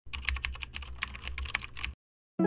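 Typing on a computer keyboard: a quick, irregular run of key clicks over a steady low hum.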